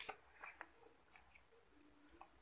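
Near silence, with a few faint, light clicks and rustles from a hand handling the paper game cards and a small game piece on a board.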